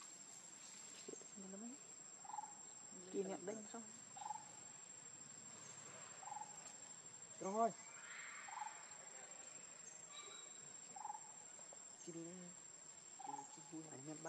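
Steady high-pitched insect trill, as of crickets, with a short chirp repeating about every two seconds. A few brief wavering voice-like calls break in, the loudest about seven and a half seconds in.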